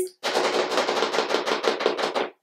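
Fingers tapping rapidly on a box as an improvised drumroll: a fast, even run of sharp taps.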